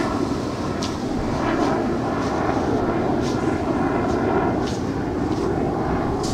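Steady rushing roar of surf washing up the beach, mixed with wind on the microphone, with a few faint short ticks.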